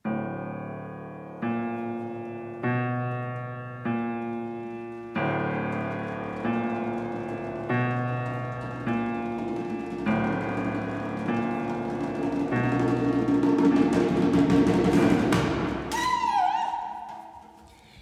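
Piano playing slow, evenly spaced chords, one about every second and a quarter, building to a loud, dense climax with drumming on djembes. A single falling tone follows near the end and fades away.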